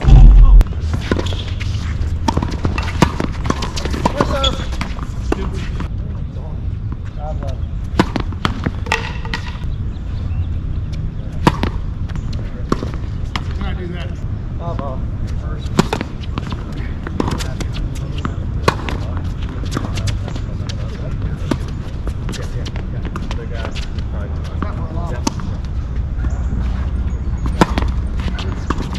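Tennis balls struck by rackets and bouncing on a hard court: sharp single pops scattered irregularly through a rally, over a steady low rumble. A loud low thump comes right at the start.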